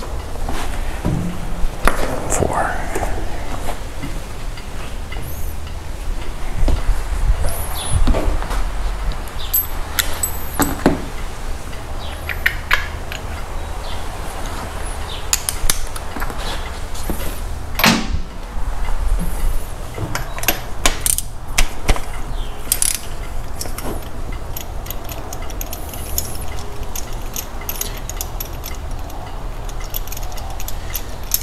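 Scattered clicks and clinks of metal hand tools and a ratchet working at an MGB engine's spark plug wires and spark plugs, over a steady low hum.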